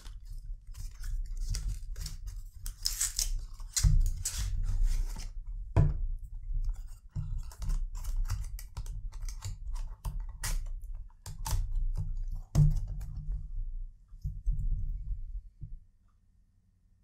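A cardboard perfume carton being handled and opened: its flaps and inner card insert scrape, rustle and click as the insert is slid out. A few sharper knocks come about 4, 6 and 12.5 seconds in.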